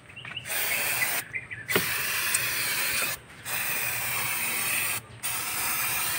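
Aerosol engine cleaner being sprayed in four hissing bursts of about a second or so each, with short breaks between them, to wash dried oil and grime off the engine.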